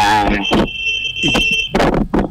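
A steady, high-pitched electronic beep lasting about a second, starting about half a second in, heard over a man's voice.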